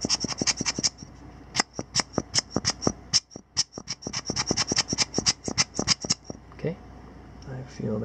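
Rubber bulb air blower squeezed in a rapid run of short puffs, about five or six a second with a couple of brief breaks, blowing sand and dust out of a camera's lens housing. The puffing stops about six seconds in.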